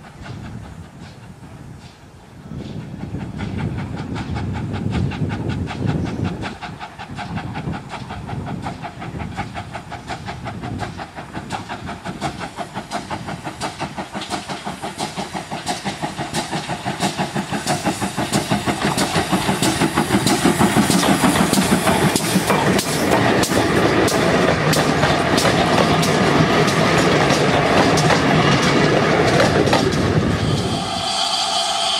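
Steam locomotive working a train past, its exhaust beats coming in a steady rhythm that grows louder and quicker as it nears, with the wheels clicking over the rails.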